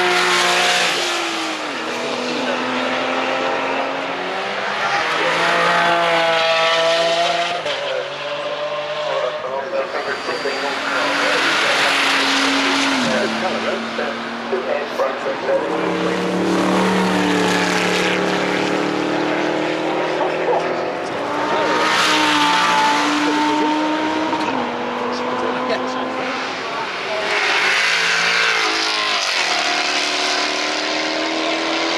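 Sports cars accelerating hard past one after another, among them a Porsche 911 and a Morgan Plus 8. Each engine's note rises and drops back at the gear changes, swelling as the car passes and then fading, about five passes in all.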